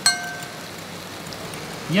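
A metal utensil clinks once against a bowl with a brief ring. After it comes a steady hiss of chicken breasts frying in a pan.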